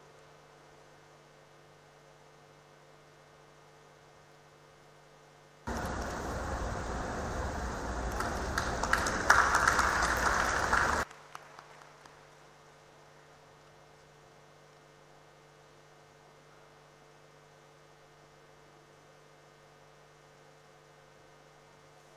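Audience applauding for about five seconds, starting suddenly, building, then cutting off sharply with a few stray claps after. Otherwise a steady low mains hum.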